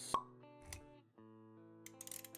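Intro music with held, plucked guitar-like notes, with a sharp pop just after the start and a softer click a little past halfway through the first second, sound effects that go with the animation.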